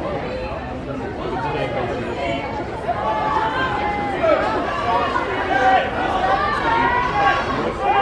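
Crowd chatter: several people talking at once, with nearer voices growing louder about three seconds in.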